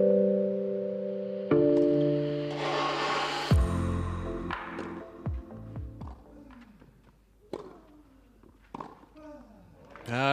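Broadcast music sting with held synth chords, a rising whoosh and a deep boom hit about three and a half seconds in. After that the court is quiet apart from a few sharp, isolated knocks, typical of a tennis ball bounced on clay before a serve.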